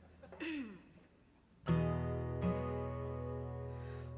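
Acoustic guitar: a chord strummed, then struck again about a second later and left ringing, slowly fading.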